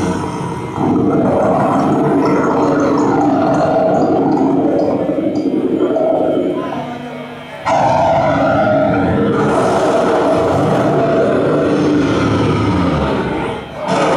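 A prog metal band playing live, loud and heavily distorted. The sound sags twice, just under a second in and again about six seconds in, and each time the full band slams back in abruptly.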